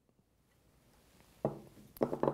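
Near silence, then about one and a half seconds in a short thunk and, just before the end, a sharp click as a metal trumpet mute is set down on a wooden crate.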